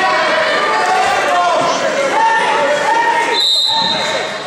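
Wrestling spectators and coaches shouting and cheering over one another, echoing in a gym hall. A short, shrill high-pitched tone cuts through about three and a half seconds in.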